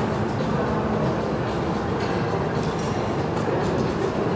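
Steady rumbling ambient noise with faint murmur and a few light ticks, unbroken throughout.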